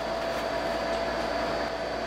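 Steady hum of a running portable air conditioner, with a few faint steady whining tones over an even fan-like noise.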